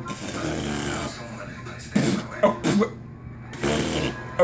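Boxer dog snuffling and licking at a man's face, with short bursts of human voice about two seconds in and again near the end.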